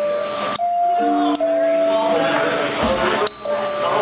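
Live toy-instrument music: tuned desk bells struck one note at a time, three strikes, each ringing on over sustained tones.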